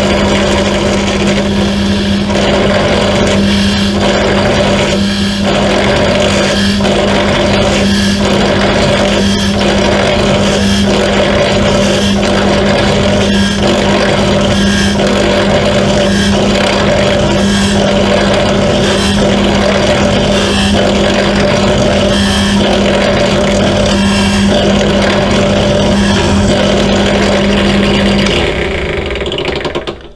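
Pedestal drill press running with a steady hum while its bit drills into a carbon-fibre propeller hub through a drill jig, pecked in and back out about once a second to clear chips from the flutes. The motor hum stops a couple of seconds before the end.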